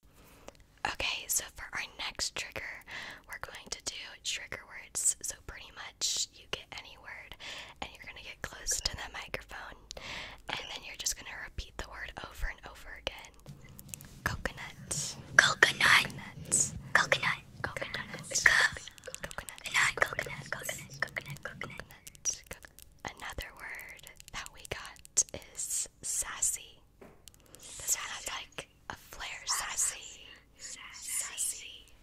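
ASMR whispering close to a microphone, broken by many quick small clicks.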